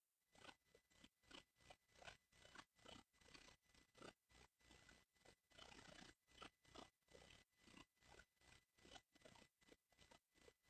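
Near silence with very faint, irregular scratchy crackling, several clicks a second.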